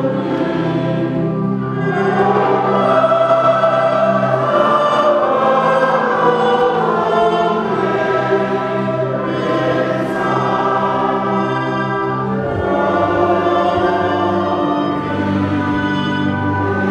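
A church congregation singing together in many voices, a slow hymn with long held notes and a steady low drone beneath.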